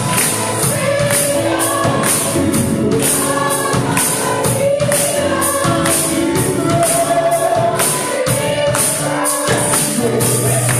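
Four women singing a gospel worship song together into microphones, over a steady beat of bright jingling percussion.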